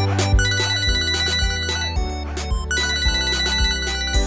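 A mobile phone ringtone: a high electronic ring sounding in two stretches over the song's beat and bass.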